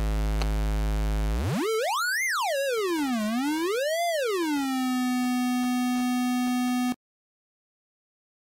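Homemade digital modular synth's VCO 1 square-wave oscillator, patched straight to the output: a low tone that is swept by hand steeply up to a high whistle, down, up again, and settles on a steady lower tone. It cuts off abruptly about seven seconds in as the patch cable is pulled from the output jack.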